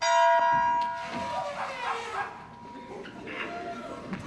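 A bright bell-like chime strikes suddenly. Its high overtones die after about a second while a lower tone rings on for a few seconds more, and performers' voices call out over it.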